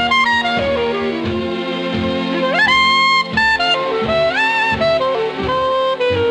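Instrumental jazz with a horn carrying the melody, its notes sliding up into long held tones over a steady accompaniment.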